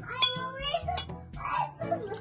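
Two sharp clinks of drinking glasses handled on a table, about a quarter second and a second in, under soft voices.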